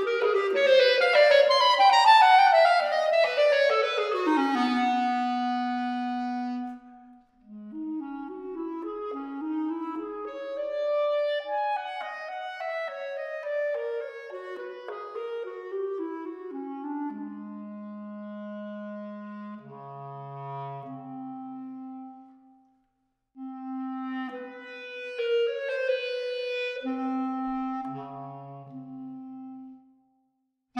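Solo clarinet in A playing: fast descending runs ending on a held low note, then slower phrases that climb and fall and dip to deep low notes. There are two short breaks, one about a quarter of the way in and one about three-quarters in.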